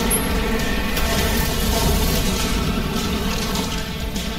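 Kart-racing video game audio: steady background music mixed with the rumble of a cartoon fire-truck kart's engine.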